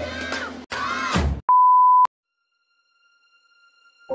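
Three short warbling, voice-like sound-effect bursts, the last sliding down into a low groan, followed by a single loud, steady beep tone about half a second long that cuts off sharply.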